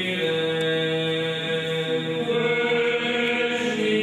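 Orthodox liturgical chant: voices singing in long held notes, moving to a new note about a quarter-second in and again a little past two seconds.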